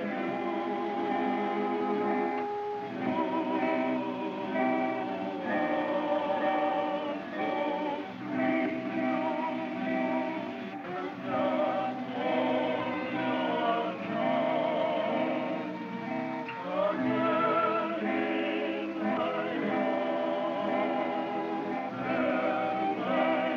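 Music of several voices singing together with strong vibrato, in phrases with short breaks, on an old narrow-band film soundtrack.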